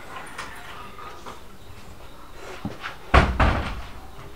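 Wooden door slamming shut about three seconds in: a loud bang with a brief rattle of further knocks after it, just after a small click.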